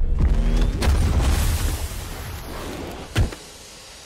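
Action-film gunfight sound effects: a heavy low rumble with a brief whirring whine at the start, a sharp hit just under a second in, and one loud bang a little after three seconds, after which the sound drops much quieter.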